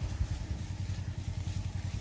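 A utility vehicle's engine idling steadily, a low, even rumble.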